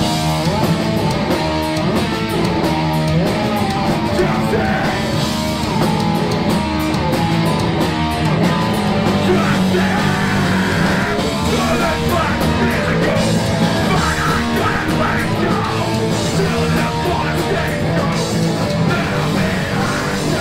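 A live punk rock band playing loudly and without a break: electric guitars and a drum kit.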